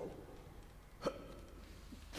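Quiet room tone with one short vocal sound from a person about a second in.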